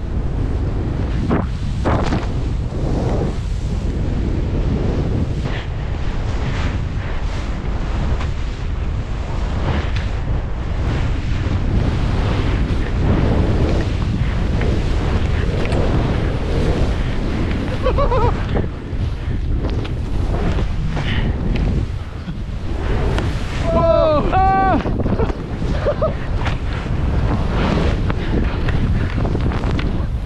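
Rushing wind on the microphone of a skier descending fast through deep powder, with the whoosh of skis and snow spray surging on each turn, about once a second.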